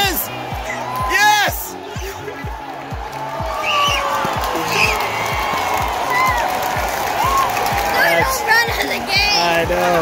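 Fans whooping twice in quick succession near the start, cheering a home run, over music with a steady thumping beat of about three beats a second. Voices talk near the end.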